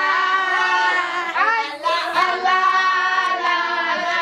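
Several women's voices singing together, the song running on without pause.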